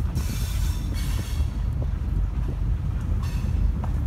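Housatonic Railroad freight train rolling slowly on the rails, a steady low rumble of wheels and cars. A high-pitched wheel squeal rides over it for the first second or so and comes back briefly near the end.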